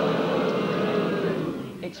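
Studio audience laughing and applauding after a punchline, a steady wash of sound that fades just before a man's voice comes in at the very end.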